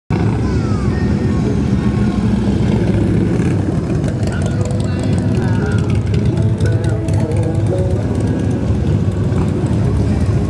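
Several Harley-Davidson motorcycles riding slowly past one after another, their V-twin engines giving a steady, loud low rumble.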